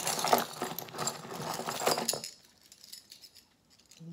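Chunky metal chain jewelry clinking and jangling as it is handled and lifted out, a dense run of small metallic clicks for about two seconds that then stops.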